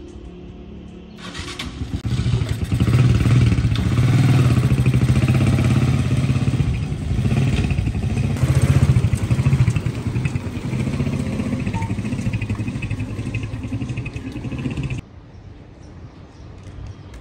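Small motorcycle engine of a three-wheeled cargo motor tricycle, starting to run about a second in and pulling away along the street, its pitch rising and falling as it is ridden. The sound cuts off suddenly near the end.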